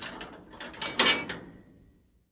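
Sound effects for an animated logo: a run of quick mechanical clicks and clacks, the loudest cluster about a second in, then fading away.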